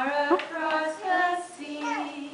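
Women and small children singing a slow song together in held notes.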